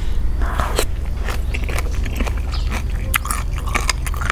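Close-miked chewing of spicy chicken-feet salad (yam leb mue nang) with instant noodles: a run of crunchy bites and wet clicks of chewing, over a steady low hum.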